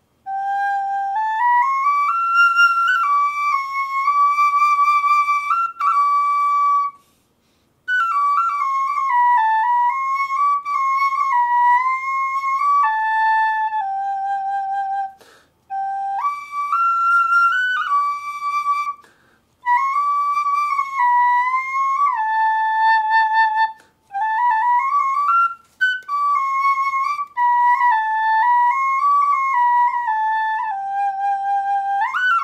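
Small pocket flute of coated Japanese knotweed, in a one-octave scale, playing a slow melody in phrases of several seconds with short breaks for breath between them. The notes move mostly by steps, and some phrases open with a note sliding upward.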